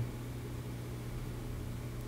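Steady low hum with a faint hiss underneath: the background room tone of a small room picked up through a microphone and mixer.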